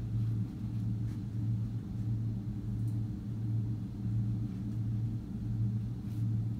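A steady low hum, the room tone of a lecture hall, with no speech over it.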